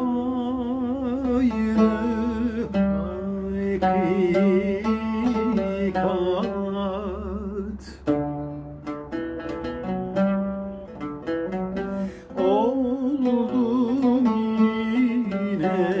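A man singing a Turkish art song in makam Acemaşiran with a wavering vibrato, accompanying himself on a plucked oud. Around the middle the voice drops out for a few seconds of oud alone, then the singing comes back in on a rising phrase.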